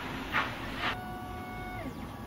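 Creality Ender-3 3D printer's stepper motors running: three short whooshing sweeps about half a second apart, then a steady whine of several tones that slides down in pitch near the end as the print head slows.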